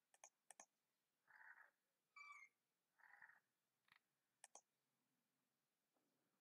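Near silence with a few faint computer mouse clicks, each a quick double click of press and release: two near the start and one more past the middle. Three short, faint pitched sounds of unclear origin come in between.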